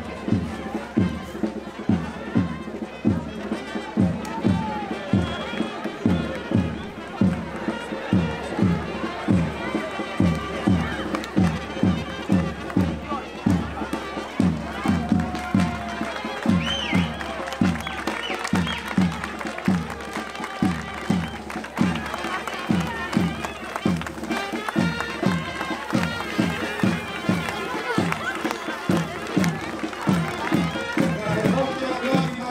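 Traditional folk band playing for a parade, led by a steady drum beat of about two strokes a second, with a reedy wind melody over it and crowd chatter around.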